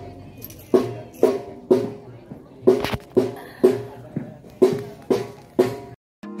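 Marching drum band striking its drums in repeated groups of three strokes, a group about every two seconds, each stroke ringing briefly.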